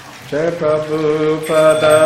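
A voice starting a devotional chant, about a third of a second in, with long held notes and a change of note about halfway through: the opening line of a kirtan.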